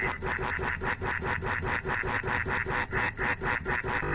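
A very short snippet of the cartoon soundtrack looped over and over in a fast stutter edit, about seven even pulses a second.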